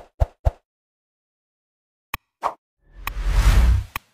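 Sound effects of an animated like-and-subscribe button overlay. Three quick pops come in the first half second and two more about two seconds in, then a whoosh lasting about a second near the end.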